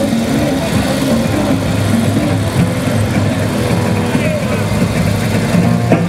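Two old kickstart motorcycles running at low speed under a human pyramid, engines steady, mixed with a song playing over loudspeakers.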